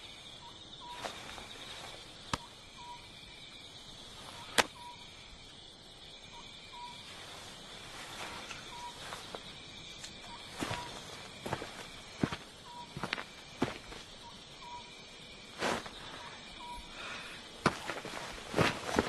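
Night outdoor ambience: a steady high insect chirring with faint short chirps repeating irregularly. Scattered footsteps and rustles over it, the loudest a sharp knock about four and a half seconds in.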